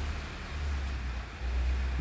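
A low, uneven rumble that swells in the second half, over a faint steady hiss.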